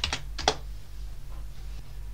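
Computer keyboard: the last keystrokes of a typed password, ending with one louder key press about half a second in that submits the login. After that only a steady low hum remains.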